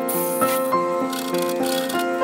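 Instrumental background music: held notes that change every half second or so, with bursts of high, hissing percussion.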